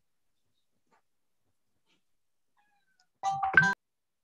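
Brief electronic beeps about three seconds in: two quick tone pairs with a click between them, like telephone keypad tones. Near silence before them.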